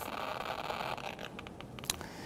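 Geiger counter (TBM-3 contamination meter) clicking rapidly as it picks up radiation from the thorium in a Coleman lantern mantle, with a sharper click near the end.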